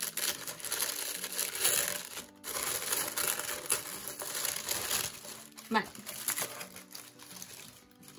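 Paper crinkling and rustling as a cardboard subscription box is opened and its tissue-paper wrapping is pulled back, with a brief pause about two seconds in and quieter handling near the end.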